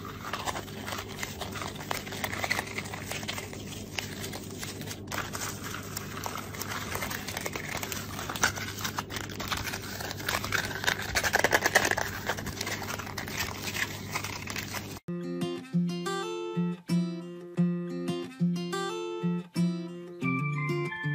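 A chipmunk tearing and rustling toilet paper off a roll: rapid papery crinkling and small clicks over a steady low hum, loudest a little past halfway. About three-quarters of the way in, it gives way abruptly to background music of plucked guitar-like notes.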